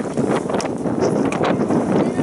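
Wind buffeting the microphone, a loud rough rumble with irregular crackles.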